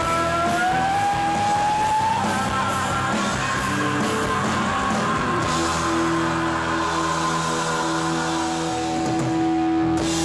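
Live rock band with electric guitar and a woman singing. A high held note slides upward in the first couple of seconds, and from about halfway through the band holds one long sustained chord: the closing chord of the song.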